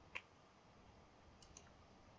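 Near silence in a pause of speech, broken by one short, soft click just after the start and a couple of fainter ticks later on.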